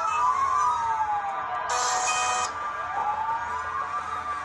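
Emergency vehicle siren wailing, its pitch sweeping slowly up and down, with two wails overlapping and crossing each other. A short hiss sounds about two seconds in.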